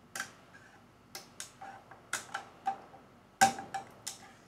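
Small 3D-printed plastic parts being handled on a 3D printer's print bed: about ten light, irregular clicks and taps, the loudest about three and a half seconds in.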